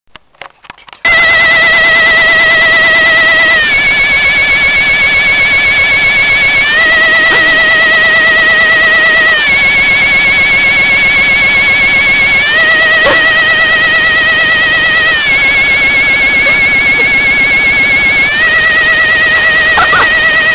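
Battery-powered toy alien's electronic sound effect: a loud, warbling electronic tone that switches back and forth between two pitches every three seconds or so, starting abruptly about a second in.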